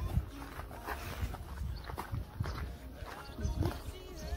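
Footsteps on a paved path, irregular knocks roughly every half second to second, over faint background music.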